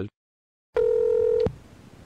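A single steady electronic beep, one tone held for under a second that cuts off sharply, following a moment of dead silence.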